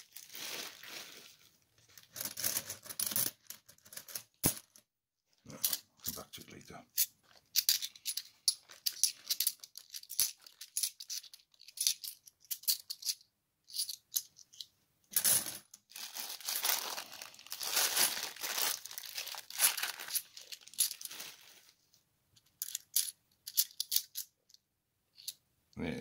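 Bimetallic £2 coins clinking and sliding against one another as a handful is thumbed through, in irregular bursts of light clicks and metallic rustling.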